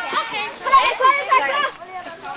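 Children's voices, several talking and calling out at once.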